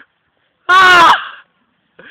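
A loud, close yell in a person's voice: one call under a second long, starting about a third of the way in, that drops in pitch at its end.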